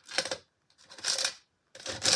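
Makeup brushes clattering against each other as they are rummaged through, in three short bursts.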